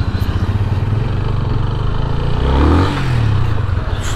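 Yamaha FZ25's single-cylinder engine running under way, heard from the rider's seat. Its note dips and climbs again a little past halfway.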